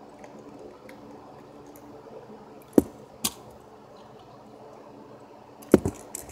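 A few sharp clicks from a small toy being handled, two in the middle and a quick double click near the end, over a faint steady hum.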